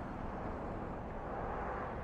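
Steady low ambient hum of distant traffic, with no distinct events.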